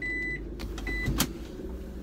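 A car's in-cabin electronic warning beeper sounding short, steady beeps a little under a second apart. It beeps twice more and then stops, and a sharp click follows just after a second in, over the low hum of the idling engine.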